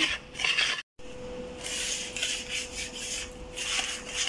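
Small wire whisk stirring thick, sticky chocolate brownie batter in a bowl, making repeated rubbing, scraping strokes against the bowl.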